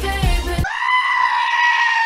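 Pop music with a heavy beat cuts off abruptly about half a second in. A goat then lets out one long scream held at a steady pitch, which runs on to the end.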